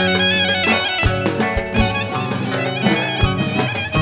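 Live Greek folk dance music from a band of clarinet, keyboard, electric guitar and drums, with an ornamented, wavering melody line over low drum beats.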